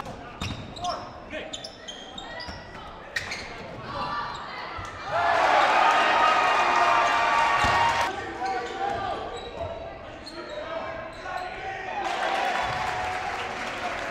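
Live indoor basketball game: a ball bouncing on the gym floor with sharp knocks, over voices of players and spectators. There is a louder stretch of voices and noise from about five to eight seconds in.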